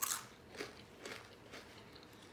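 Crunching on a thick potato chip: a crisp bite right at the start, then a few softer chewing crunches about half a second apart.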